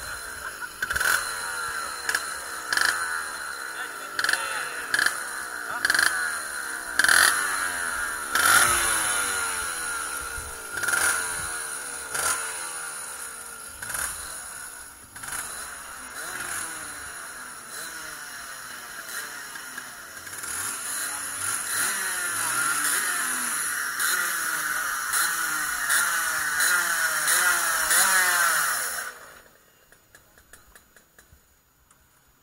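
Two-stroke kart engines running and being revved over and over, their rising whines overlapping with sharp blips of throttle. The sound cuts off suddenly near the end.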